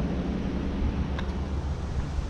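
Steady outdoor background noise: a low rumble under an even hiss, with a faint click about a second in.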